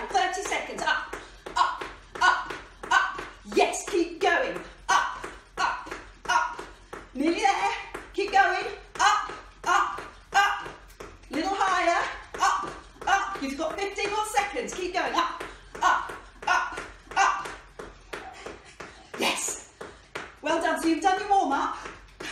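Trainers landing on a tiled floor in a quick, even rhythm of high-knee footfalls, about two and a half a second, with a woman talking breathlessly over them.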